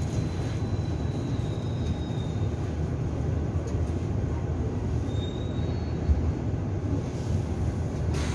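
Daegu Metro Line 1 train car heard from inside, running with a steady low rumble of wheels on rail as it approaches a station. A faint high wheel squeal comes in twice, once in the first couple of seconds and again about five seconds in.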